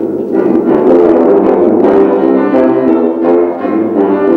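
Rotary-valve tuba playing a brisk classical passage of quick notes, with grand piano accompaniment.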